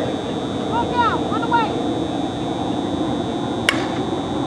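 A single sharp crack of a softball bat hitting the ball near the end, over the steady chatter and calls of players on the field.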